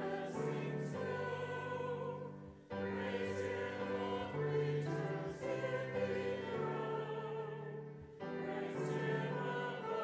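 Church choir singing in held, legato phrases with piano accompaniment. The music dips briefly between phrases about two and a half seconds in and again about eight seconds in.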